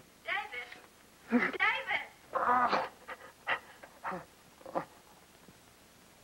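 A man moaning and groaning in pain: several drawn-out, wavering moans in the first three seconds, then three shorter groans that die away about five seconds in.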